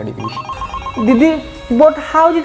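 Mobile phone ringtone: a rapid run of short, even beeps in the first second, followed by a voice over music.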